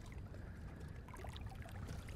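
Faint water around a boat: quiet lapping and trickling with a few small ticks over a low steady rumble.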